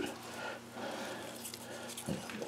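Faint rustling of pea vine leaves and stems as a hand works among them to pick a pod.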